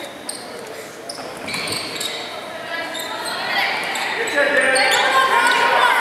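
Basketball dribbled on a hardwood gym floor amid players' and spectators' voices that grow louder from about halfway through, with short high squeaks, all echoing in the large gym.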